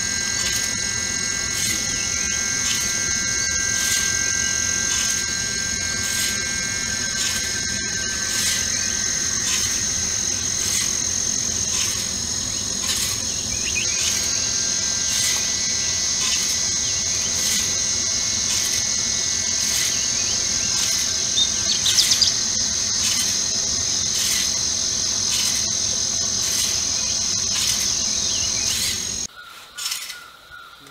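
Insects droning in a steady, high-pitched chorus with a regular pulse, joined by a few bird chirps about two-thirds of the way through; the sound cuts off suddenly just before the end.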